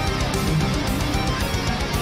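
Symphonic death metal playing: electric guitars over fast, steady drumming.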